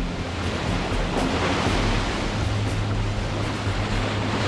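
Rough sea breaking over a warship's bow: a steady rushing wash of water and spray.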